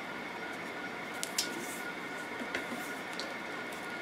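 Handling noise from a 1/6-scale action figure being posed: a few light clicks and soft rustles as its legs are bent, over a steady background hiss.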